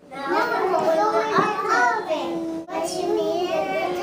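Several young children talking in a sing-song way, in two phrases with a short break a little past the middle.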